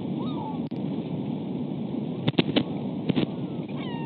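Steady wind rush on an outdoor nest-camera microphone, with a few faint small-bird chirps near the start and a quick run of five or so sharp clacks a little past halfway.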